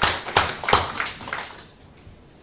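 Applause from a small audience, many separate hand claps, dying away about two seconds in.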